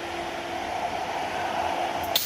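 High-speed automatic KF94 fish-shaped mask machine running: a steady mechanical hum with a thin constant tone in it.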